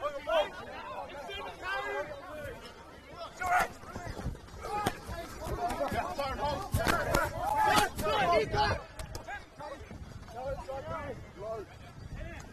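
Rugby players calling and shouting to one another across the pitch, the words indistinct, with a few sharp knocks partway through.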